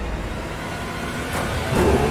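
A low rumble under a noisy hiss, swelling louder near the end: a trailer's sound-design rumble.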